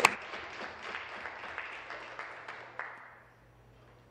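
Applause from members in the chamber, hand clapping that dies away over about three seconds.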